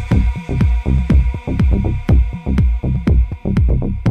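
Deep tech house music: a steady four-on-the-floor kick drum at about two beats a second, each kick carrying a bass note that falls in pitch, with hi-hats ticking over it.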